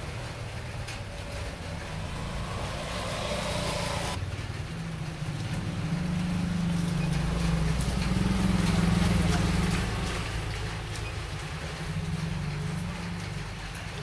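A motor vehicle engine running nearby as a steady low rumble. It grows louder through the middle and eases off again a couple of seconds later. A higher hiss stops abruptly about four seconds in.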